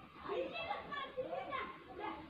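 Children's voices in the background, talking and playing, fainter than the main speaker's voice.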